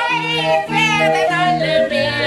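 Barrel organ playing a tune in held pipe notes that change step by step, with voices singing along in a high, wavering vibrato.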